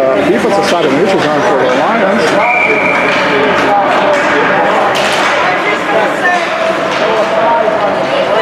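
Several people talking at once, voices overlapping in an indoor ice rink, with a brief high steady tone a little over two seconds in.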